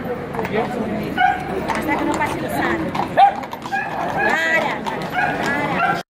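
A dog barking amid steady crowd chatter; the loudest moment is one short sharp call about three seconds in.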